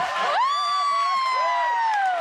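One person's long, high-pitched whoop of cheering over studio cheering and clapping. It leaps up about half a second in, then is held and slides slowly lower.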